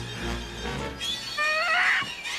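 Tense film score with low pulsing notes. About a second in, a woman lets out a high, wavering scream while struggling with her attacker.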